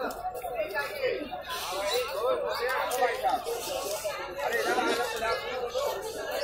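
Crowd chatter: many voices talking over one another, no single voice standing out.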